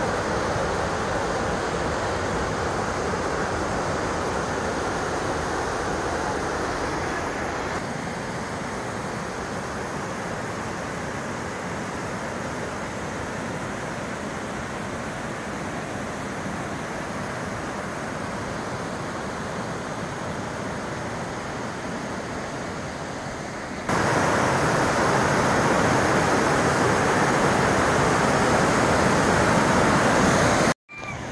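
Steady rushing of a waterfall pouring over rock ledges into a pool. It turns a little softer about eight seconds in, then comes back suddenly louder about six seconds before the end.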